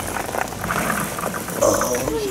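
Cheese balls pouring out of a plastic jar, a rapid patter of many small, light hits.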